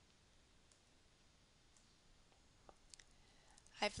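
Near silence with a few faint computer mouse clicks, most of them in the second half.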